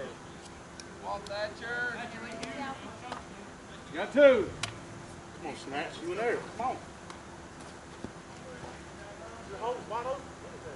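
Players' voices calling out across a softball field, too far off to make out. The loudest is one shout about four seconds in. A few faint clicks come in between.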